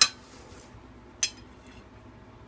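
Metal knife and fork clinking against a dinner plate as a hamburger patty is cut: a sharp clink at the start and a second, lighter one about a second later.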